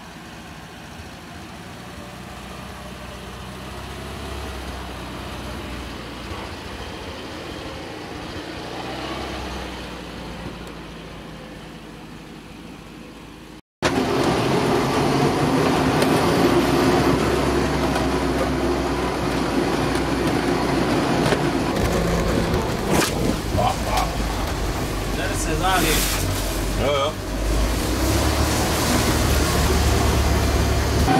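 Steyr-Puch Pinzgauer 710's 2.5-litre air-cooled petrol engine pulling the vehicle slowly along a rough forest dirt track. It is heard first from outside as the vehicle approaches. After a sudden cut about halfway through, it comes from inside the cab, much louder, with body rattles and knocks over the rough ground.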